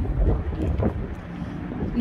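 Wind buffeting the microphone: a low rumble, strongest in the first half second.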